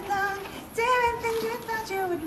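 A woman singing a slow melody in held notes, one short phrase and then a longer sustained one after a brief pause.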